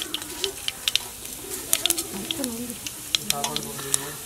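Cumin seeds and urad dal frying in a little oil in a black iron kadai, sizzling with frequent sharp pops and crackles.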